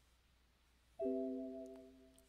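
Trading software's electronic alert chime about a second in, several steady notes sounding together as one chord and fading over about a second: the signal that the sell limit order has filled.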